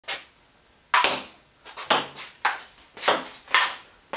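Table tennis rally: a ping-pong ball clicking off paddles and the table top, about seven sharp hits at roughly two a second.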